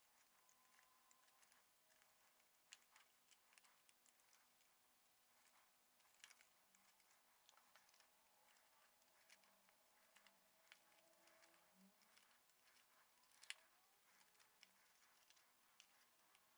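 Near silence, broken by a few faint short snips of small scissors trimming thin cardboard; the clearest comes near the end.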